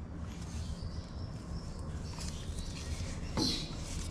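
Faint scraping and rubbing as a brake caliper is slid back down over new front brake pads and the rotor, with a slightly louder scrape about three and a half seconds in, over a steady low hum.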